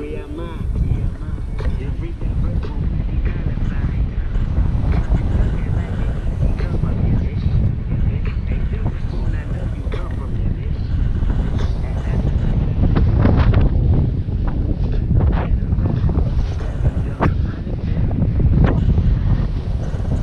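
Wind rushing over the microphone of a camera on a paraglider in flight: a steady loud rumble, heaviest in the lows, with a few short knocks.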